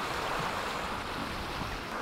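Fast-flowing moorland stream running high over a stony ford: a steady rush of water.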